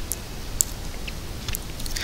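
A handful of short, light computer mouse clicks, scattered about half a second apart, over a steady microphone hiss.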